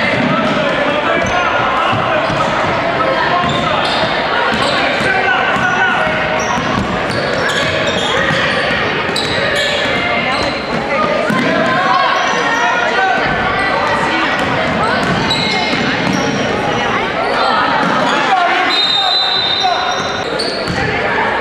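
Basketball game in a gym: the ball dribbling and bouncing on the hardwood court, with short high sneaker squeaks, under steady voices of players and spectators, echoing in the large hall.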